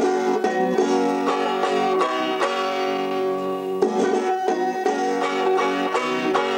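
Banjo picking: a quick, continuous stream of plucked notes ringing over a held chord, starting suddenly.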